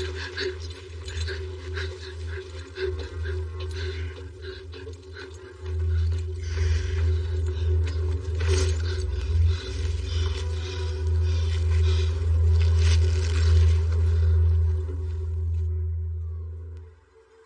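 A dark, low musical drone that swells louder about six seconds in, with steady tones above it. Irregular scraping and rustling sounds of movement run over the drone throughout.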